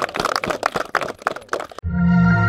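Several people clapping in a brisk, uneven patter of sharp claps that cuts off abruptly near the end.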